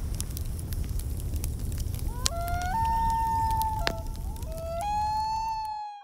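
Wood fire crackling in a small twig stove, with scattered sharp pops. About two seconds in, a clear whistle-like tone starts, holding a lower note and then stepping up to a higher one. It comes again near the end, and all the sound fades out at the very end.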